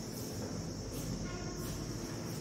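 Steady background room noise: a low hum and a constant hiss, with a faint, brief pitched tone a little past the middle.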